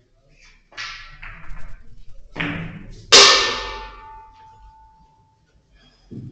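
A billiards shot: the cue tip strikes the cue ball, then ivory-hard balls click against each other and the cushions in a few sharp knocks. The loudest is a hard clack about three seconds in that rings on for a couple of seconds.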